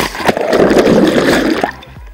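A person plunging into the sea off a pedal-boat slide: a loud rushing splash close to the microphone as water washes over it, lasting about a second and a half and then dropping away abruptly.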